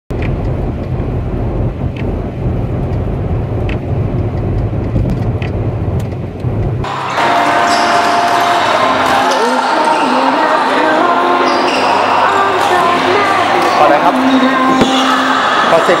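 Steady low rumble of a car driving along a highway, heard from inside the car. About seven seconds in it cuts off abruptly and gives way to loud voices talking in a room.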